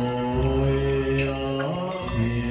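Buddhist liturgical chanting through a microphone: long, drawn-out sung notes that step from pitch to pitch, with faint regular taps running under it.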